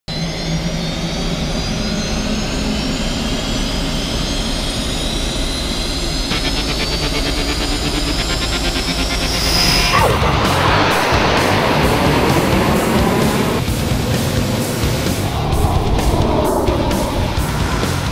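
Jet engine whine of a Canadair CT-114 Tutor rising steadily in pitch, then a jet passing close with a falling pitch about ten seconds in. Background music with a regular beat plays underneath.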